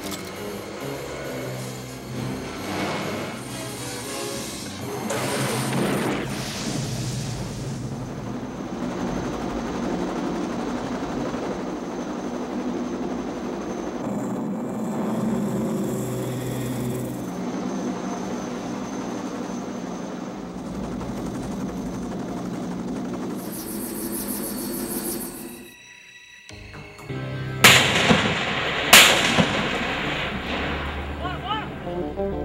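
Action-film soundtrack music with gunfire sound effects; near the end, after a brief drop, two loud blasts about a second apart.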